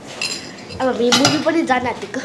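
A metal spoon clinks against a bowl a quarter-second in, with another clink just past the middle, as food is scooped and eaten. Voices come in over the second half.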